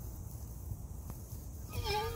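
A horse gives a short, quavering whinny near the end, over a low steady rumble.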